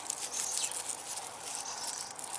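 Rustling and small crackles as hands handle and pull apart a strawberry plant's dry leaves, runners and roots close to the microphone.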